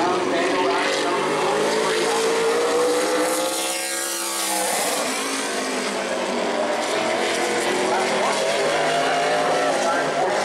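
Super late model stock car's V8 engine at full throttle on a qualifying lap, its pitch climbing as it accelerates. About four seconds in the pitch dips briefly as the car passes, then climbs again down the next straight.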